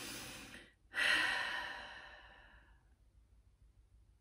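A woman's sigh: a breath in, then a longer breath out starting about a second in that fades away over about two seconds.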